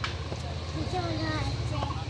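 Faint, distant voices over a low, steady background noise.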